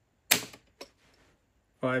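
Hammer of a Crosman 1875 Remington CO2 revolver snapping down as the trigger breaks under a trigger-pull gauge: one sharp metallic click, followed about half a second later by a softer click.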